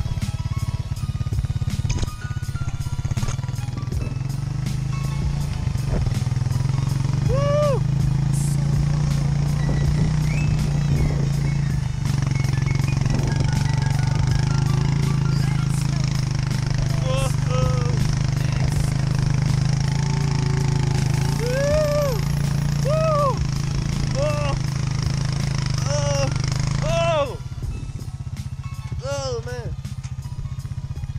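Four-wheeler engine running steadily while a sled is towed behind it over snow, with several short rising-and-falling yells over the drone. The drone cuts off sharply near the end as the sled stops.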